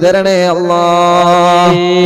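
A man's voice chanting one long, steady held note in Islamic devotional recitation (dhikr). The note ends just before the close.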